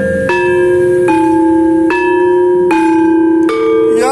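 Javanese gamelan playing srepeg in pelog barang: metallophones struck about once every 0.8 seconds, each note ringing on into the next, with no singing voice.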